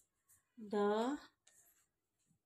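A woman's voice holding one drawn-out vowel sound about half a second in, with faint scratching of a pen on notebook paper before and after it.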